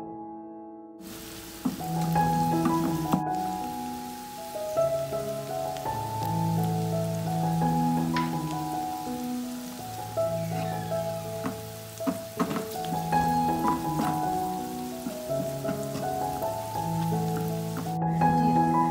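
Diced onions sizzling in melted butter in a frying pan, starting about a second in, with a wooden spatula clicking against the pan as they are stirred. Background music with a slow melody plays throughout and is the loudest sound.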